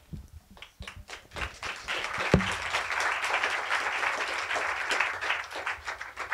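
Audience applauding: a few scattered claps that swell into full applause about two seconds in, then thin out near the end. A single thump about two seconds in is the loudest moment.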